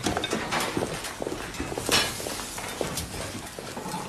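Restaurant background: irregular footsteps and light knocks and clinks of tableware over a low room murmur.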